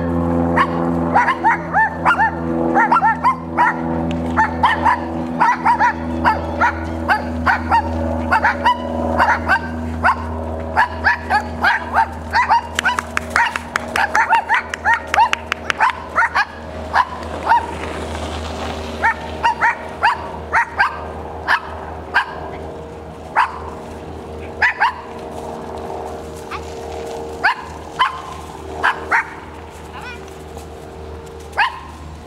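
A dog barking over and over, two or three short barks a second in the first half, fewer and more spaced out later. A steady low hum runs underneath and fades away.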